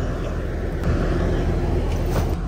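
Steady low rumble of a motor vehicle running, with a faint low hum underneath.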